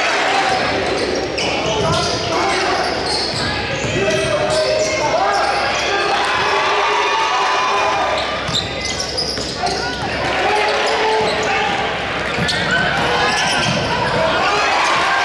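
Live sound of a basketball game in a gymnasium: a basketball bouncing on the court amid the voices of players and spectators calling out and talking.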